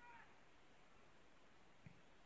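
Near silence, with a faint, short, falling high call right at the start and a faint dull knock near the end.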